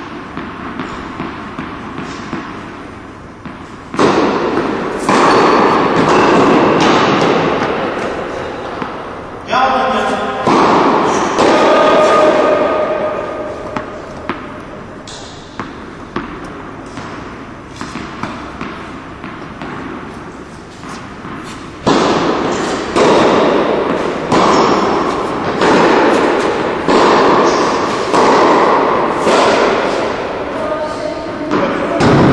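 Tennis balls struck by rackets and bouncing on an indoor court, sharp hits about a second apart, each with a long echo in the hall.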